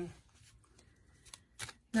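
Faint handling of a deck of oracle cards: after a quiet stretch, two soft card clicks come about two-thirds of the way through and again shortly after.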